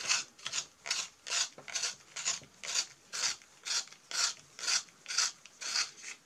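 A wooden colored pencil being sharpened in a Faber-Castell T'GAAL hand sharpener, twisted through the blade in evenly repeated rasping turns, about two a second.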